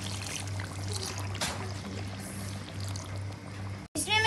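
Water being poured into a hot wok of chicken masala curry, a steady pouring splash that stops abruptly near the end.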